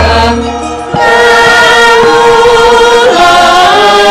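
Javanese gamelan music with a group of female singers holding a long sung melodic line together. A deep low tone sounds under them in the first second.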